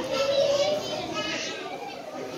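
Children's voices and chatter from a crowd of visitors.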